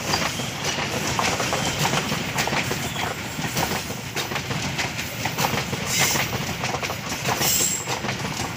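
Passenger coaches of an Indonesian (KAI) local train rolling past close by: a steady rumble of wheels on rail, with a rapid, uneven clatter as the wheels run over rail joints.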